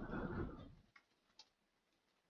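Faint computer keyboard keystrokes, a few isolated light clicks, as text is typed. A brief muffled low noise in the first second is the loudest sound.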